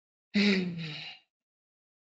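A man's short, breathy vocal exclamation, loudest at its onset and trailing off within about a second.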